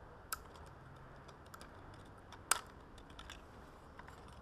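Small plastic clicks and snaps from hands handling the body of a white JJRC X6 quadcopter. The clicks are irregular, with a sharp one about a third of a second in and the loudest about two and a half seconds in.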